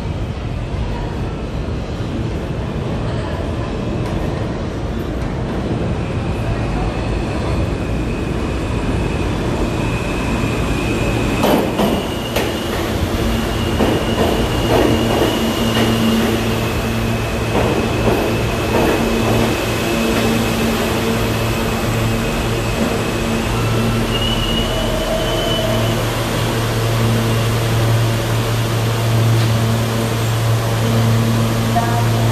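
New York City Subway train pulling into the station: a rumble that grows as it approaches, wheels clattering over the rail joints as it runs in alongside the platform with a high, steady squeal, then a low steady hum from the stopped train near the end.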